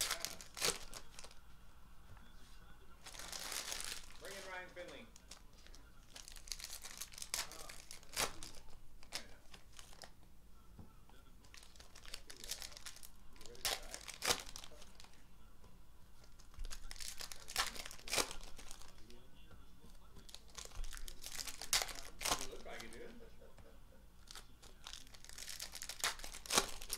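Foil trading-card packs crinkling and tearing as they are handled and opened by hand, in scattered short, sharp rustles with cards sliding between them.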